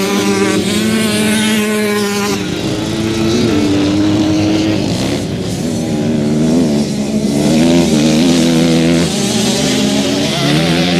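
Motocross dirt bikes racing, several engines revving up and down as they accelerate and change gear. The sound changes about two and a half seconds in.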